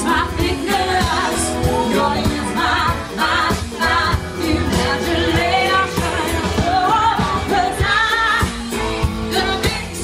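Live band playing a pop-rock song with a singer, loud and unbroken, over a steady drum beat.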